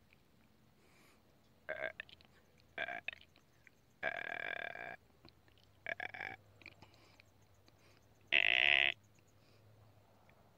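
A deer calling: five short, pitched calls a second or two apart, the one about four seconds in lasting about a second and the loudest near the end.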